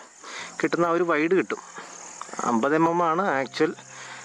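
A man speaking in two short stretches, over a steady high-pitched insect drone.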